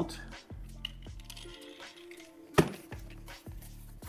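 Soft background music with light handling sounds. About two and a half seconds in comes one sharp clack as the outboard's transom mount bracket is set down in its cardboard box.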